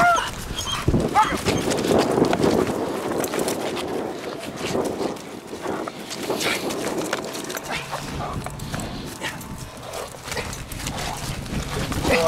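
German Shepherd dog sounds and scuffling as the dog charges and grips a helper's bite sleeve, busiest in the first few seconds and quieter after about four seconds in.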